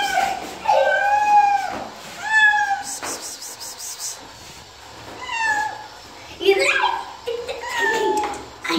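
A cat meowing repeatedly: about five drawn-out meows, the first and longest about a second long, each rising and falling in pitch.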